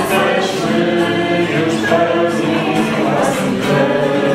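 A small group of voices singing a Polish religious song together, accompanied by a strummed acoustic guitar.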